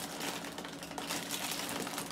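Plastic cereal-box liner bag crinkling and crackling in rapid, irregular bursts as it is gripped and pulled at to tear its sealed top open.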